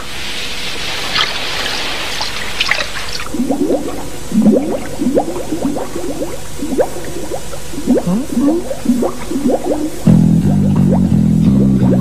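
Cartoon underwater sound effects: a hiss like surf for the first three seconds, then a run of short bubbling bloops that bend up and down in pitch. About ten seconds in, a plucked bass-guitar riff starts.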